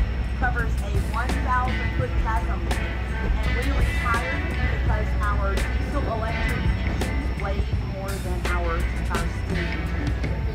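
Background music with a melodic line over a steady low rumble.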